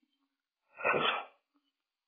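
A single short, breathy burst from a person close to the microphone, like a stifled sneeze, about a second in.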